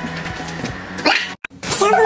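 Soft background music with a steady low note, broken about a second in by a short loud burst, then a brief dropout to silence before louder music with several held notes starts near the end.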